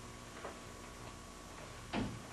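Two faint taps, a weak one about half a second in and a louder one near the end, over a steady background hum.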